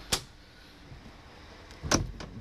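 Latch and hinged sheet-metal door of an FG Wilson 200 kVA generator's acoustic enclosure being opened: a sharp click just after the start and another clack near the end, with little sound between.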